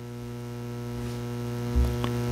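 Steady electrical mains hum, a low buzzy drone that grows slightly louder over the two seconds, with a brief low thump near the end.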